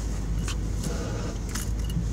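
Steady low rumble of a car heard from inside the cabin, with a few light clicks and rattles about half a second in and again near the end.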